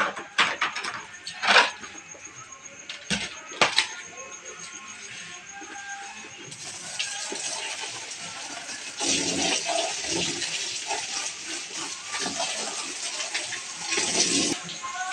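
Plastic cups, basins and pots knocking together as they are washed, several sharp clatters in the first few seconds, then tap water splashing into a plastic basin from about halfway through. A song plays in the background.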